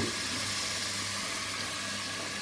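Chopped tomato, garlic, herbs and anchovy frying in a little oil in a pot on a gas burner: a steady sizzle with a faint low hum beneath.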